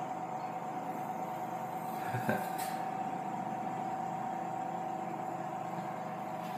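Steady machine hum with a high whine inside a closed passenger lift car, with one light click a little over two seconds in.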